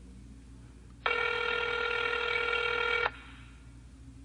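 A single telephone ring: a steady electronic tone lasting about two seconds, starting about a second in and cutting off suddenly.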